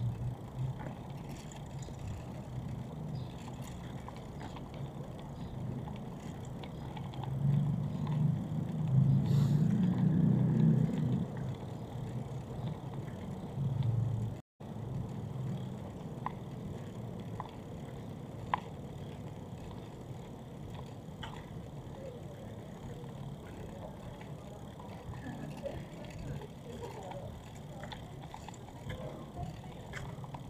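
City street ambience: a steady low rumble of traffic, swelling louder for a few seconds from about seven seconds in as a vehicle passes, with faint voices of passers-by and a few light clicks. The sound cuts out for an instant about halfway through.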